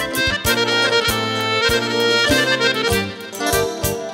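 Live dance music led by an accordion, with drums and bass.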